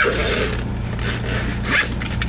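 Zipper-like scraping rasp as a hockey-card binder is handled and lowered, over a steady low hum.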